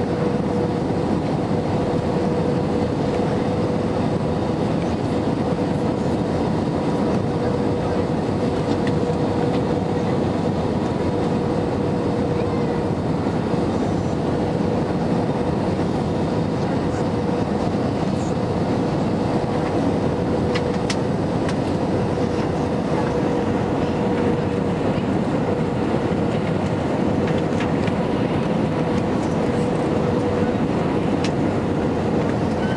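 Steady cabin noise inside an Airbus A320-214 on approach, heard from a seat over the wing: the rush of airflow and the hum of its CFM56 engines, with one steady mid-pitched tone running through it.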